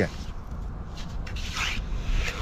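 Small metal trowel scraping and digging into damp beach sand, with a stronger gritty scrape about one and a half seconds in, as a moon snail is dug out of its burrow.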